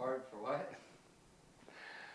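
A man's short, quiet voiced sound, falling in pitch, then a breath drawn in near the end.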